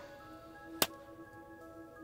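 A single sharp hand clap a little before the middle, a slate clap in a field recording being played back for syncing, over quiet background music with held tones.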